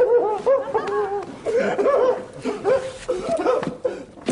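A man's staged, exaggerated sobbing, delivered as a string of wavering, rising-and-falling wails with brief catches of breath between them. It is a deliberately overdone performance of unrestrained sobbing.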